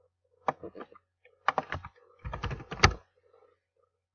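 Typing on a computer keyboard: several quick clusters of keystrokes, the loudest single key strike near three seconds in.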